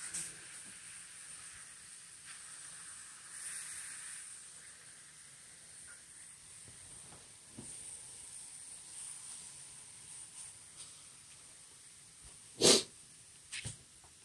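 Beef London broil sizzling faintly as it sears in a hot, oil-free nonstick pan, with light clicks of tongs moving the meat. Near the end, one loud, short burst of noise.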